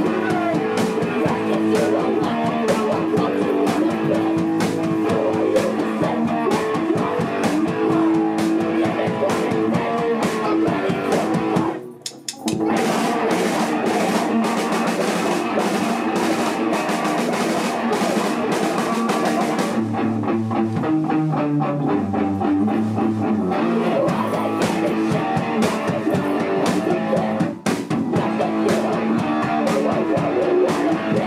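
Hardcore punk band playing live: distorted electric guitar, bass and drum kit with screamed vocals. The band stops dead for a moment about twelve seconds in. Around twenty seconds in the top end drops away for about four seconds, leaving a low riff, before the full band crashes back in.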